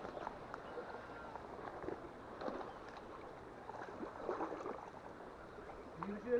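Faint creek water with a few scattered light splashes and knocks as a hooked trout is drawn in close to the bank.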